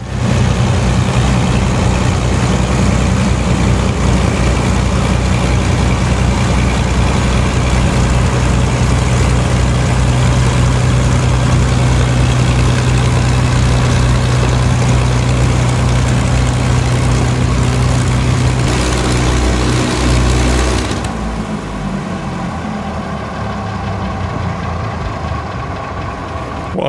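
Heavy engine running steadily and loudly at a constant speed. A few higher steady tones join in near the end, then the sound drops to a lower level about 21 seconds in.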